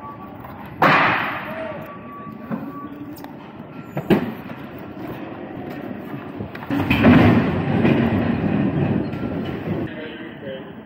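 A forklift working at a loading dock, with metal clatter and rumbling. A sudden loud clatter comes about a second in and dies away, a sharp knock follows near four seconds, and a longer rumbling clatter runs from about seven seconds to near the end.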